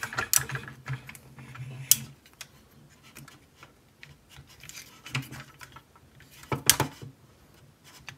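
Small clicks, rubbing and snaps of a transforming robot action figure's parts as they are shifted and tabbed into place by hand, with a sharper click about two seconds in and a pair of louder ones near the end.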